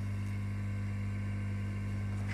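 Steady electrical mains hum: a low, even drone with an overtone above it, unchanging throughout.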